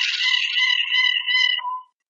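A steady, buzzing electronic tone lasting nearly two seconds, then cut off suddenly as the microphone is muted.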